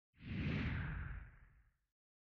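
A logo-reveal whoosh sound effect: one swoosh that comes in suddenly and falls in pitch as it fades away over about a second and a half.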